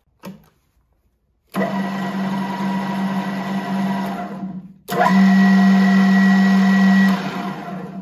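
Wisent DCG-25 geared-head drill press switched on with a click; its three-phase motor and gearbox run up to a steady hum with gear whine. The sound cuts out briefly and starts again louder on the other motor speed. It then steps down and runs down near the end.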